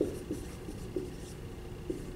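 Marker writing on a whiteboard: a series of short, squeaky strokes at an uneven pace.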